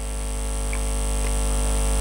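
Electrical mains hum from a public-address sound system: a steady low buzz with many overtones that grows slightly louder, heard in a pause between spoken words.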